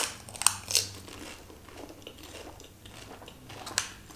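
Close-miked biting and chewing of a crisp golgappa (pani puri) shell: several sharp crunches in the first second, softer chewing, then another crunch near the end.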